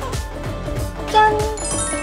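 Upbeat background music with a steady beat; about a second in, a bright bell-like ding rings out as the loudest moment, followed by a quick run of high twinkling notes.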